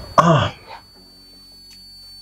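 A person clears their throat once, a short voiced sound that falls in pitch, at the start. Then quiet room tone with a faint, steady high-pitched whine.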